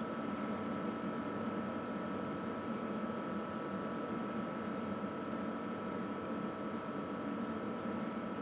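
Steady low background hiss and hum with a faint steady high whine, and no distinct events.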